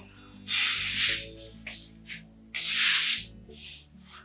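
Cloth rustling in two main swishes, each under a second, with a few shorter ones between, as clothing and bedding rub while a person sits down on a bed. Soft background music underneath.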